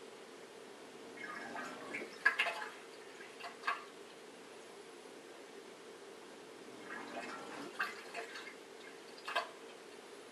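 Bosch SHE4AP02UC dishwasher drain pump starting and stopping over a faint steady hum, with two short spells of gurgling and splashing water, one about a second in and one about seven seconds in. The pump is trying but failing to pump much water out of the sump.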